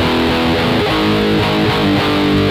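Raw black metal: electric guitar and bass playing held chords that change about every half second, at a steady, loud level.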